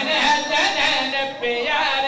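Unaccompanied man's voice chanting verse through a microphone, holding long notes that waver in pitch.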